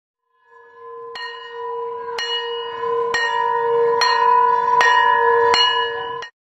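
Bell-like chime tones ringing steadily and growing louder, re-struck six times with the strikes coming gradually faster.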